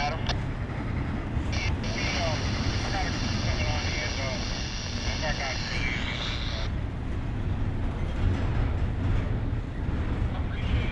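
CSX double-stack container train rolling past, its wheels rumbling steadily over the rails. A high, steady squeal from the wheels sets in about a second and a half in and stops suddenly just before seven seconds.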